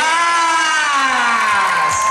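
One long, drawn-out shouted cheer from a single voice, its pitch falling steadily over about two seconds.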